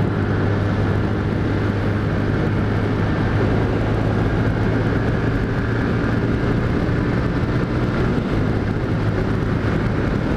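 Honda CG Titan motorcycle's single-cylinder engine running steadily at highway speed, mixed with wind and road noise at the helmet camera.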